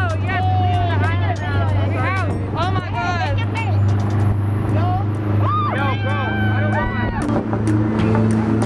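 A boat's engine running with a steady low drone as it moves through the water, with people's voices calling out over it.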